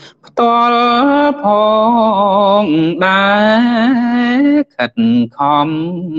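A man chanting Khmer smot, the Buddhist style of sung verse recitation. He holds long notes with wavering ornaments, and the line breaks into short phrases near the end.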